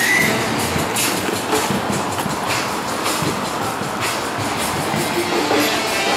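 Steady city street noise, with music playing along with it.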